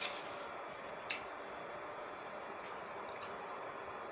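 Two light clicks about a second apart, with a fainter one later, over faint steady room noise, from handling a fork and plate of spaghetti.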